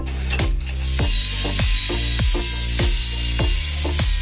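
Angle grinder's abrasive cut-off disc cutting through a thin steel tube: a loud, steady high-pitched grinding hiss that starts shortly after the beginning and runs on, over background music with a steady beat.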